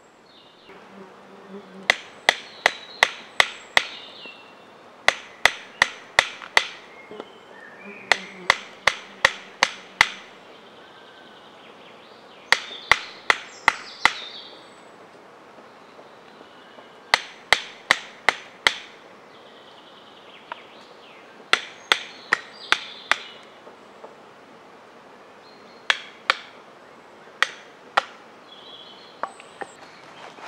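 Sharp wooden knocks of a baton striking a blade driven into a linden wood billet on a chopping block, splitting the spoon blank. The knocks come about three a second in runs of five or six, with short pauses between runs and two single strikes near the end.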